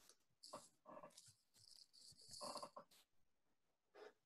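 A dog whining faintly in a few short bursts, the loudest about two seconds in, picked up through a video-call microphone.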